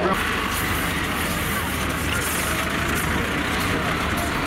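Vehicle engines running steadily, with a recovery tractor lifting a wrecked banger car: a low rumble under an even wash of noise.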